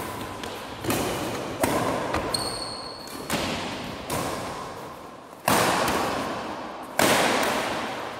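Badminton rackets smacking a shuttlecock back and forth in a rally, about six sharp strikes a second or so apart, each ringing out in the hall's reverberation. A short high squeak comes about two and a half seconds in.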